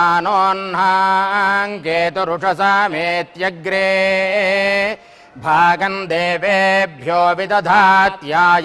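Vedic mantra chanting: a sustained, melodic recitation of Sanskrit blessings on a held reciting pitch, with a brief pause about five seconds in.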